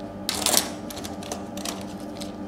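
Gloved hands handling a small metal-and-plastic IR liquid cell on a tabletop: a short burst of rubbing about half a second in, then scattered light clicks.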